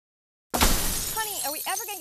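A sudden loud crash of shattering glass about half a second in, its noisy tail fading over roughly a second.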